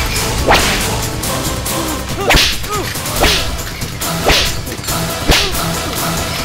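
Dubbed film-fight sound effects of a belt used as a whip: five sharp swishing lashes, the last four about a second apart, as blows land in a beating.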